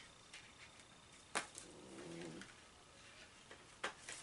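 Faint handling of makeup cases: a few sharp plastic clicks, the loudest about a third of the way in and another near the end. About halfway through comes a short, low, wavering pitched tone lasting under a second.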